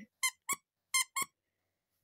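Four short, high squeaks in two quick pairs, like a squeaker toy being squeezed.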